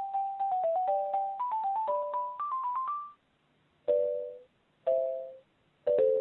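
Telephone hold music heard down the phone line: a simple electronic melody of single notes that stops about three seconds in. Then come three short two-tone beeps, about a second apart, as the call is put through to an extension that does not answer.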